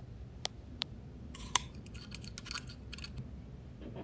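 Computer mouse and keyboard clicks while editing: a few separate sharp clicks, the loudest about one and a half seconds in, then a quick run of softer clicks.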